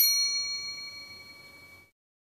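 A single bright bell-like ding, struck once and ringing out with a fading tone, then cut off suddenly near the end: an added editing sound effect at the cut to a new ingredient shot.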